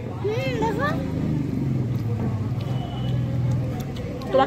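A person's voice talking briefly in the first second, over a steady low hum of background noise that carries on after the voice stops.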